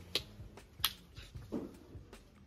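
Two sharp snap-like clicks about 0.7 s apart, the second louder, then a softer dull thump, over a low steady hum.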